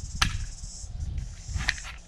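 A plastic C-Tug kayak trolley's sand-track wheel being pulled off its axle by hand, with two sharp plastic clicks, one shortly in and one near the end, over handling noise.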